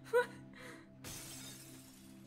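A sudden shattering crash, a burst of noise about a second in that fades over most of a second, over a steady low music drone. A brief high vocal sound just before it, near the start, is the loudest moment.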